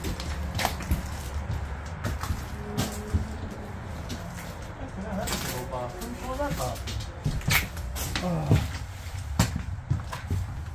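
Footsteps and scattered knocks and clicks as people walk over a debris-strewn floor in a derelict static caravan, with brief low voices around the middle.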